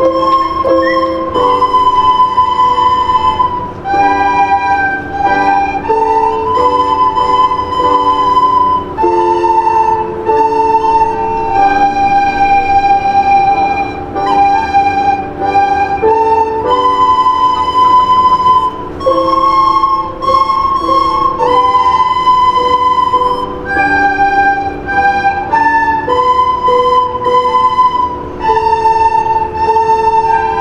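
A class of young children playing plastic soprano recorders together in unison, a simple tune moving note by note, with piano accompaniment holding chords underneath.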